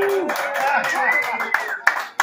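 A small group of people clapping, with voices calling out over the applause.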